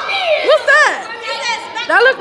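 Excited high voices chattering and calling out over one another, with sharp rising-and-falling shouts.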